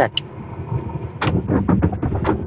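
The SRM X30 van's 1.5-litre turbocharged inline four-cylinder engine being started with the key, heard from inside the cab. About a second in, the engine catches with a quick, uneven run of thumps and then keeps running.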